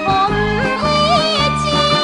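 Japanese ondo-style dance song on record: a woman sings a wavering, ornamented melody over orchestral accompaniment with a steady beat.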